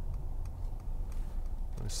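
Steady low road and drivetrain rumble inside the cabin of a diesel-hybrid Mercedes-Benz C300 BlueTEC Hybrid on the move, with a few faint, irregular clicks.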